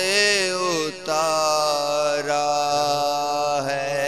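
Wordless chanted vocals of an Urdu noha lament: long held notes that waver in the first second, then hold steady from about a second in.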